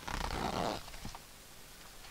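A paper book page being turned: a short rustle of under a second, then a faint click.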